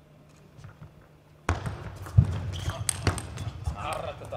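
Table tennis rally: the celluloid-type plastic ball clicks sharply off rubber-faced rackets and the tabletop, several hits a second, starting about a third of the way in after a quiet pause. Low thuds of the players' feet sound among the hits.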